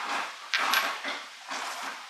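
Welded steel differential spider gears being handled in gloved hands over a metal workbench: a sharp metallic click about half a second in, amid soft rustling.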